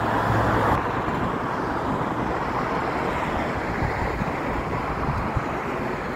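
Steady distant rumble of a plane climbing overhead, mixed with road traffic noise; the rumble is a little louder in the first second.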